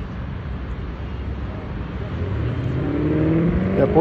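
Steady low outdoor rumble, with a motor vehicle's engine rising in pitch and getting louder over the last second or two.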